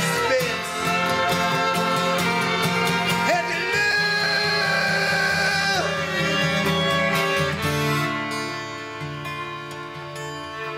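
Small acoustic band playing a song: acoustic guitar, upright bass, fiddle and flute, with long held notes and a rising slide a few seconds in. The playing eases off and gets quieter near the end.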